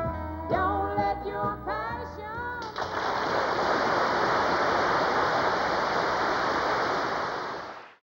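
Closing bars of a country song by a band, giving way about three seconds in to steady audience applause that fades out at the very end.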